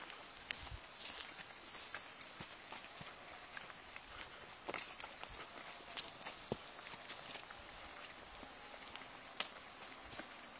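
Footsteps of people walking on a dirt forest trail, an uneven patter with scattered sharp clicks and knocks, the loudest about six seconds in.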